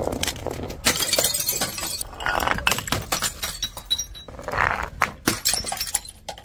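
A glass jar breaking on stone steps: a string of impacts as it shatters, with glass shards clinking and skittering.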